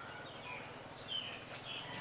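Birds chirping: a scattering of short, high chirps over a faint low hum.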